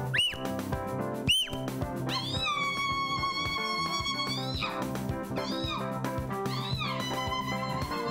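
Gospel instrumental break on an electronic arranger keyboard: a high lead voice bends up into long held notes, with short swooping glides, over a steady bass backing.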